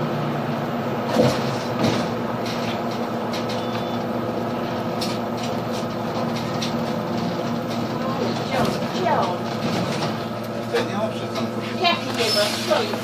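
Interior of a Solaris Urbino 18 III Hybrid articulated city bus on the move: a steady drivetrain hum with several even tones over road noise, and a couple of knocks and rattles about a second in. Voices talk briefly in the second half.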